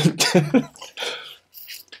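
A man's short wordless vocal sounds in several bursts, such as coughing or throat-clearing.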